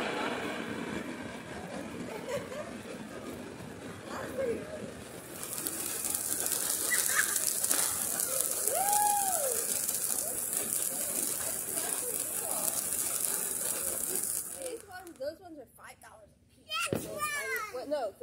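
Ground fountain firework spraying sparks with a steady high hiss, which starts about five seconds in and cuts off near fifteen seconds. Children's voices are heard over it, and more clearly near the end.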